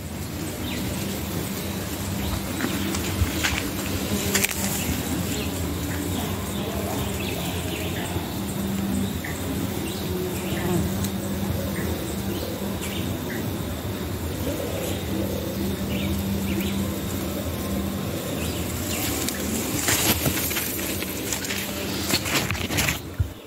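Honeybees buzzing steadily as they work the corn tassels, a continuous low drone, with leaves brushing and a few small clicks over it.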